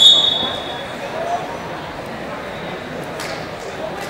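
A referee's whistle blows once, a single clear shrill note lasting about a second, over the steady murmur of a crowded wrestling hall.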